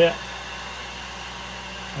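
Steady whir of a small blower motor moving air, unchanging throughout.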